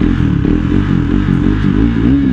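KTM motorcycle's single-cylinder engine running at low revs while riding slowly, its pitch dipping and rising again near the end, over steady wind noise on the microphone.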